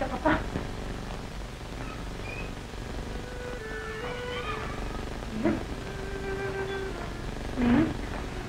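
Soft film-score music of held notes that step in pitch, with three short pitched moaning cries: about a third of a second in, at about five and a half seconds, and near the end.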